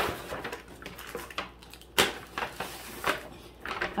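Paper gift bags rustling and crinkling as they are handled, with a few sharp crackles, the loudest about halfway through.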